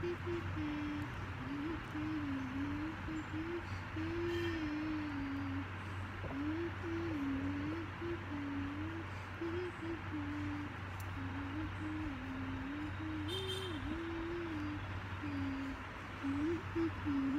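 A girl humming a meandering tune with her lips closed, over a steady low background hum.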